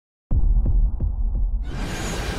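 Intro-animation sound design: a sudden deep bass boom that rumbles on with a faint ticking pulse about three times a second, then a swell of hiss building near the end.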